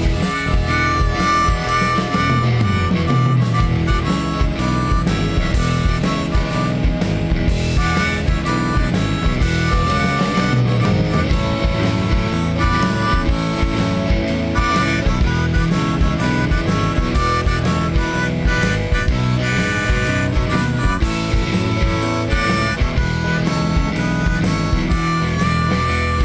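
Instrumental break in a blues song: a harmonica solo of held and bent notes over a band backing with a steady beat.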